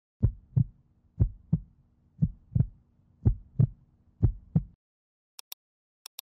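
Heartbeat sound effect: five lub-dub double thumps about a second apart, stopping a little before the end. A quick double click follows near the end.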